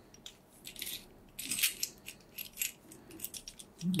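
Metal parts of a microscope stand being fitted together by hand: a run of light metallic clicks and rattles, with a short scrape about a second and a half in.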